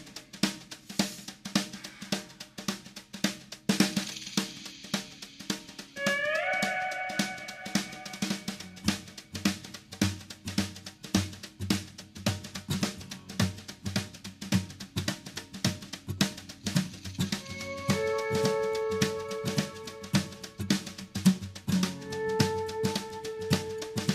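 Background music with a steady drum-kit beat. Held melodic notes come in about six seconds in with a short upward slide, and again near the end.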